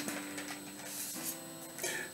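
Faint background guitar music with held notes that change about a second in, and a single click at the very start.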